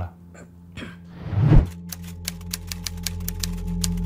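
An edited transition: a swelling whoosh that peaks about a second and a half in, then a low held drone with fast, even ticking clicks over it, a suspense-style music bed.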